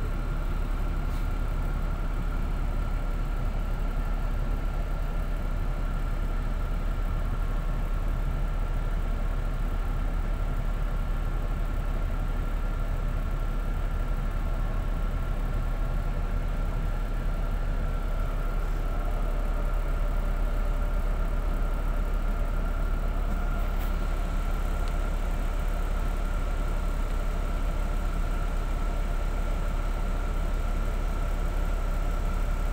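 Bus engine and road noise heard from inside the passenger cabin: a steady low rumble with a faint, steady high whine running through it.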